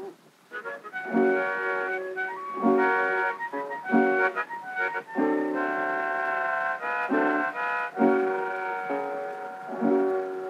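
Harmonica and guitar playing an instrumental passage from a 1925 78 rpm shellac record, with held harmonica chords over guitar strums. It begins after a brief gap.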